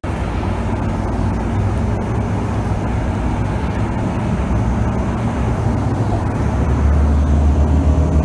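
Engine and road noise from inside a moving bus: a steady low drone with rumbling tyre noise. The engine drone grows louder near the end.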